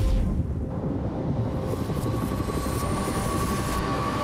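A Jaguar C-X75 concept car driving at speed: a steady low rumble of road and drive noise, with a thin whine rising slightly in pitch through the second half.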